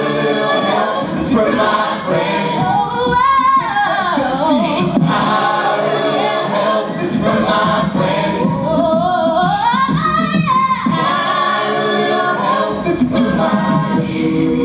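Mixed-voice a cappella group singing wordless held chords into microphones, with a solo voice sliding up and down in long runs above them twice.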